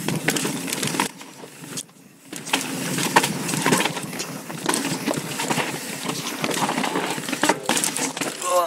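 Yeti SB4.5 mountain bike riding over rock: tyres rolling and crunching on sandstone and loose stones, with many sharp clicks and knocks from the bike as it rattles through the rough ground. The noise drops away briefly about two seconds in, then picks up again.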